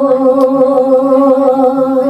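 A woman singing one long held note of a Balinese geguritan into a microphone, the pitch wavering slightly without a break.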